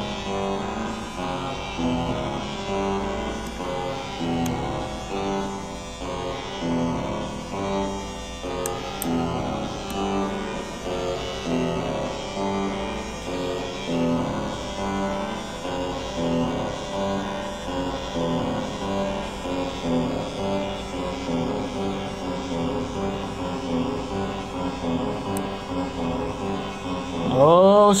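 Homemade 8-step analog sequencer (Baby 10 design) looping an eight-note pattern of stepped synth tones through a circuit-bent Atari synth. The notes repeat in a steady cycle.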